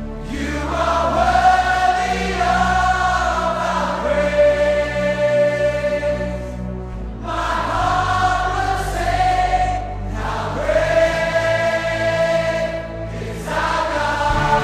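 Contemporary Christian worship song: a choir sings long, held phrases over steady instrumental backing, in three phrases of a few seconds each with short breaks between.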